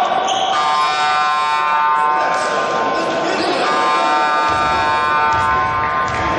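Basketball scoreboard buzzer sounding a long, steady, harsh electronic tone. It weakens for a moment midway, then sounds again for about two more seconds.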